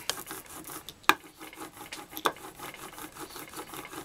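Ink brayer rolled back and forth through tacky etching ink on a plexiglass slab, a repeated sound with each stroke as the roller is loaded with ink. Two sharp clicks, about a second in and a little after two seconds.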